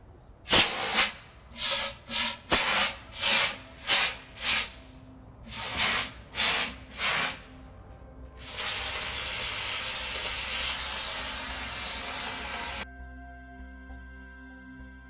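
Fire extinguisher discharging onto a burning duvet: about ten short hissing spurts, then one long steady spray that cuts off suddenly near the end.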